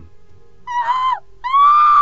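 Two high-pitched screaming cries for help, each held on one pitch and dropping away at the end, the second a little longer, over a faint steady music drone.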